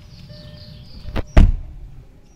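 A car door being shut: a sharp knock and then, a moment later, a heavy thud, a little over a second in.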